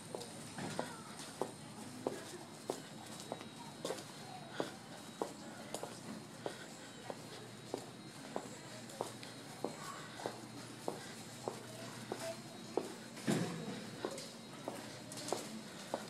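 Steady footsteps walking on a concrete walkway, sharp regular steps about three every two seconds. There is a low thump about thirteen seconds in.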